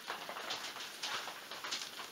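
Faint room noise with light, irregular ticks and taps.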